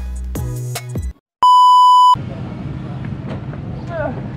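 Background music with a beat cuts off about a second in. After a brief silence, a loud electronic beep sounds: one steady pure tone lasting under a second. It is followed by low, steady outdoor background noise.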